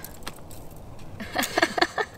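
A plastic food tub and its lid handled as mashed chickpeas are tipped out. It is quiet at first, then a quick run of short clicks and crackles in the second half.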